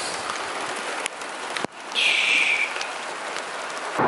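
Steady hiss of light rain falling outdoors. There is a click a little under two seconds in, then a brief high-pitched sound lasting about half a second.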